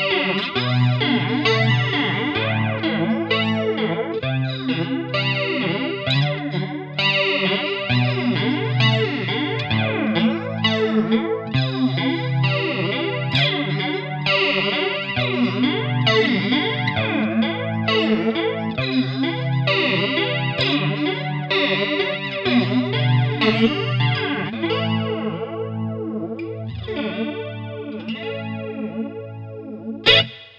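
Jackson electric guitar played through a Blackstar Studio 10 6L6 valve amp, with a multi-modulation pedal in the amp's effects loop set to flanger. Rhythmic strummed chords; the playing thins out near the end and the last chord is left ringing.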